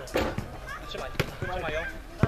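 A basketball hitting the backboard and bouncing on a hard outdoor court: several sharp thuds, with men's voices calling out between them.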